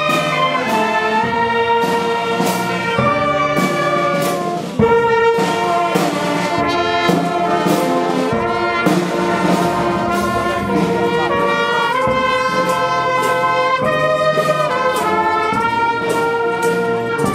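Street marching band playing a tune on clarinets and brass horns, with a drum striking the beat under the held notes.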